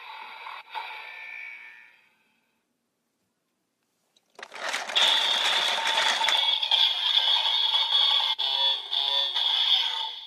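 DX Evol Driver toy transformation belt playing its electronic sound effects through its small built-in speaker. The tail of its voice-and-music announcement fades out within the first two seconds. After about two seconds of silence, a loud electronic standby sound with a steady high tone starts as the belt is handled, and keeps going.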